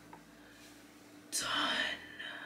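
Near silence, then about a second and a half in a woman's short breathy whisper.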